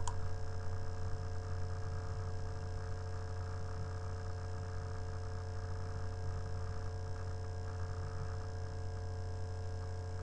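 Steady electrical hum with several constant tones, the background noise of the recording setup, with a single mouse click right at the start.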